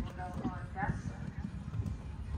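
A horse's hoofbeats as it canters on a sand arena, with voices heard faintly over the top during the first second.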